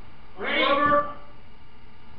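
A person's voice: one drawn-out, fairly high-pitched call lasting about half a second, starting about half a second in.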